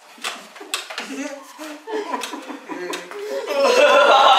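A group of teenage boys breaking into loud laughter about three and a half seconds in. Before that come muffled voices from mouths full of candy and a few sharp clinks.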